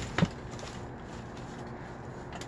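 A single short knock near the start as a book is handled in the pile, then a faint steady low hum.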